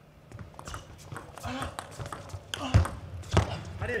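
Table tennis rally: the plastic ball clicks in a quick, fairly even run off the rackets and the table, with voices in the hall and two louder bursts near the end.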